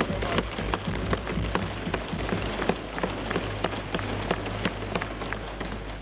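Parliamentarians thumping their desks and clapping in approval of the speech: a dense, steady patter of many irregular knocks.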